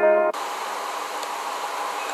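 Piano-like keyboard intro music cuts off suddenly a moment in, leaving a steady hiss of recording background noise with a faint hum.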